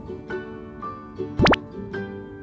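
Light plucked-string background music, with a quick rising pop-like sound effect about one and a half seconds in.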